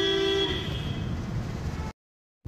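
A vehicle horn sounding one steady note that stops about half a second in, followed by the low rumble of the car and traffic; the sound cuts out suddenly just before the end.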